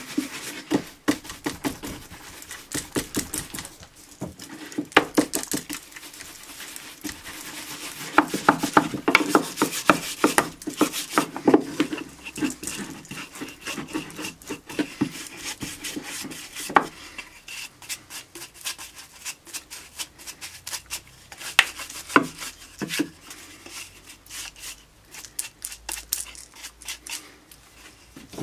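Stiff brush dabbing oil finish into the routed letters of a hardwood sign: quick, irregular taps and rubbing of bristles on wood, coming in clusters.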